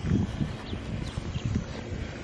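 Footsteps and handling noise from a handheld camera carried while walking outdoors: irregular low thumps, strongest near the start, over a steady hiss.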